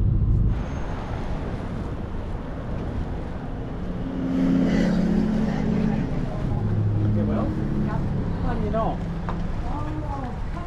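Steady vehicle engine and traffic noise with some wind on the microphone; a low engine hum grows louder about four seconds in and fades a few seconds later.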